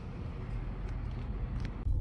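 Steady low rumble of outdoor urban background noise, with a few faint ticks.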